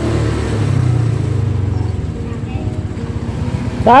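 A small motorcycle engine running while riding along a street, a steady low rumble with road and wind noise. A man calls out once near the end.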